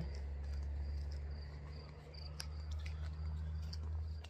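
Crickets chirping in short high pulses over a steady low hum, with a few faint clicks.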